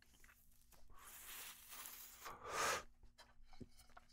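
A man drawing on a joint of cannabis: a long, faint, breathy inhale, then a short, louder breath out about two and a half seconds in.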